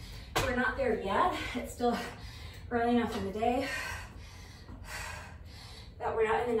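A woman's breathless voice in two short stretches of words or gasps during hard exercise, over a steady low hum.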